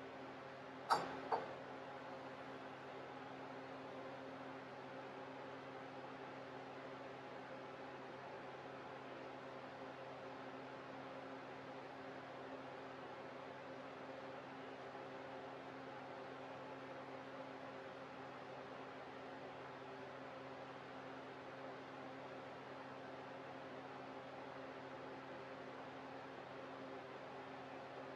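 Two brief glassy knocks about a second in as an upturned glass mason jar is set down over a candle into a water-filled glass bowl, followed by a faint steady room hum with a few low fixed tones.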